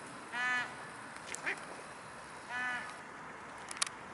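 Waterfowl calling on a pond: two short calls about two seconds apart, with a fainter brief call between them and a couple of sharp clicks near the end.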